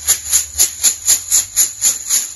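Numbered draw tokens rattling inside a cloth bag as it is shaken by hand, an even rhythm of about four shakes a second, mixing the numbers before a prize draw.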